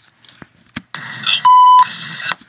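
A censor bleep: a steady, high, pure beep lasting about a third of a second, cutting in over the noisy audio of a video clip being played back. It is the loudest sound, and the clip's own sound resumes straight after it.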